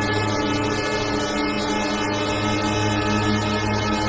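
Handmade six-oscillator mini drone synthesizer holding a dense drone of many layered steady tones, with a low pulsing beat. The low part of the drone thins out about a second in and comes back after about two seconds.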